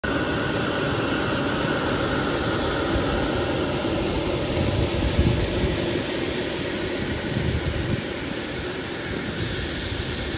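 Electric side-channel air blower for pond aeration running: a steady whirring hiss with a faint high whine in the first few seconds. Low rumbling gusts come about halfway through.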